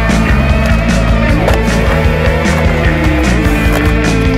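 Music soundtrack with a steady drum beat.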